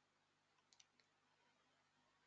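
Near silence: faint room tone with two or three very faint clicks near the middle.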